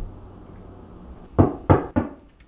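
Three quick knocks on a door, starting about a second and a half in.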